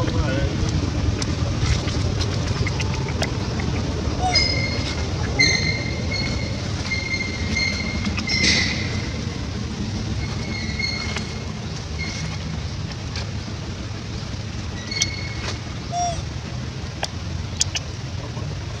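Steady low outdoor background noise, over which a series of short, high, steady chirping tones repeats from about four seconds in until about twelve seconds, and briefly again near fifteen seconds.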